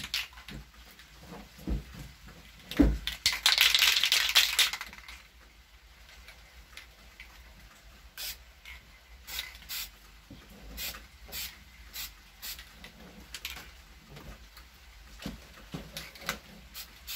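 Aerosol can of lacquer spray paint hissing in one burst of about two seconds, laying a light first coat, with a sharp knock just before it. Later come a string of short, fainter puffs and clicks.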